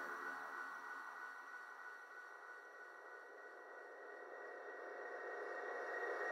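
A quiet breakdown in an electronic dance music set: a few faint, steady synthesizer tones over a thin hiss. It fades to its quietest about halfway through, then slowly swells back up.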